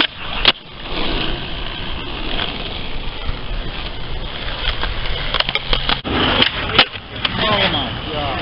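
Skateboard landing a trick on an asphalt court with a sharp clack about half a second in, then rolling noise and another sharp skateboard clack near the end.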